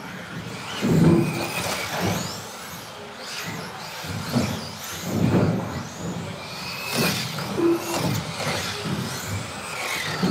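Electric 2wd stock-class RC buggies racing on the track, their motors whining and sweeping up and down in pitch as they accelerate and brake. A few short beeps cut in now and then.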